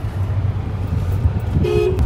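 Steady low rumble of a car heard from inside the cabin, with one short car horn beep near the end.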